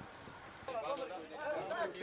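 Faint pitch-side sound from a football match: distant voices calling out, starting under a second in.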